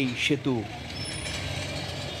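Street traffic: motorcycles, scooters and cars moving slowly in congestion, an even hum of engines and road noise that comes through plainly once the voice stops, about half a second in.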